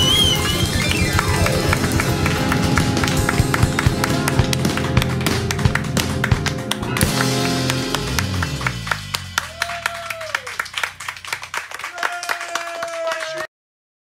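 Small acoustic band of guitar, button accordion and bass guitar playing out the end of a song, with people clapping along. The instruments die away about nine seconds in, leaving claps and a voice, and the sound cuts off abruptly near the end.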